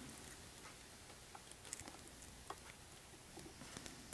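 Near silence with a few faint, short clicks as wire cutters nip the lead barb off a jig head's collar.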